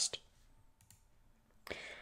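Near silence with two faint computer-mouse clicks, about two-thirds of a second and just under a second in, after a man's voice trails off at the start; a soft rush of noise near the end.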